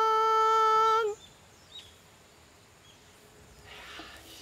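A man's voice holding one long, high sung note, steady in pitch, that breaks off with a slight drop about a second in; after that it is quiet apart from faint small chirps.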